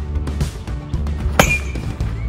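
Background music with a steady low beat; about 1.4 s in, one sharp metallic ping with a brief ring, a baseball struck by a metal bat.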